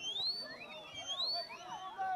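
A high whistle gliding up and falling back twice, over shouting voices.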